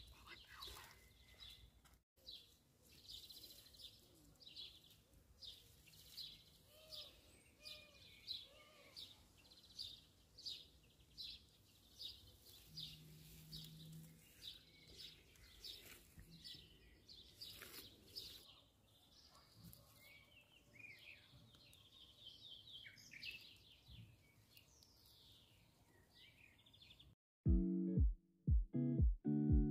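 Faint bird chirping: a long run of short, high chirps repeated about one or two a second. Near the end it cuts off and plucked guitar music begins.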